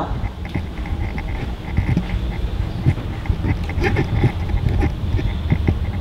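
Footsteps climbing carpeted stairs: irregular dull thumps with rumble from the handheld camera.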